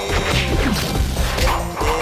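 Dramatic drama-soundtrack music with a voice drawing out a chanted incantation, and several crashing sound-effect hits over it.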